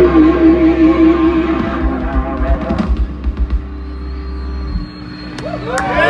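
Live rock band playing out the end of a tune, with long, slightly wavering guitar notes that die away about halfway through. Near the end the crowd starts cheering and whooping.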